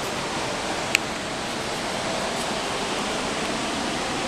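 Steady rush of the Ganges running over rocky rapids, an even noise without rhythm, with a single brief click about a second in.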